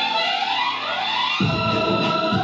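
Instrumental introduction of a recorded backing track for a patriotic song: sustained melodic tones, one line gliding upward, with a low pulsing beat coming in about one and a half seconds in.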